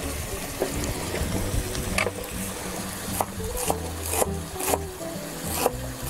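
Knife chopping fresh herbs on a wooden cutting board, in short irregular chops about once or twice a second, over background music.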